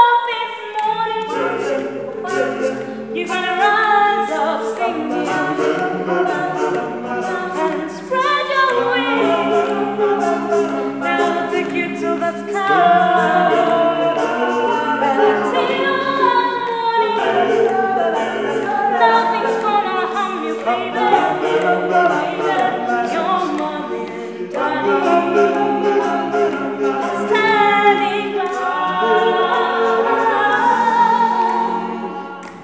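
A cappella gospel vocal group singing: a female lead voice over close choral harmony from mixed male and female backing voices, with a steady beat of short sharp sounds running through it.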